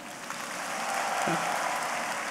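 Large audience applauding, swelling to its loudest a little past the middle and then slowly fading.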